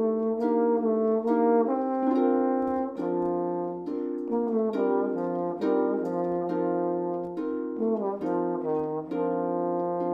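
A trombone plays a lyrical melody in smoothly joined, sustained notes. A concert harp accompanies it, plucking notes at a steady pace underneath.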